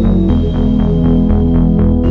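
Background music with a steady pulsing beat, about four pulses a second, over held chords.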